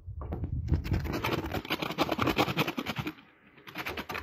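Crisp toasted bread slice being scraped, giving a rapid dry crunching scrape that shows how crisp and hard the toast is. The scraping runs from about half a second in to about three seconds in, with a short second burst near the end.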